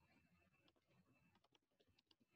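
Very faint computer keyboard typing: a few scattered keystrokes, most of them in the second half.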